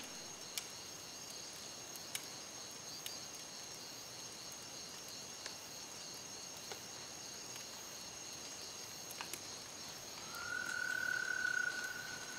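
Night ambience of insects chirping steadily at a high pitch, with a few faint ticks. About ten seconds in, a single held tone joins and runs for a couple of seconds.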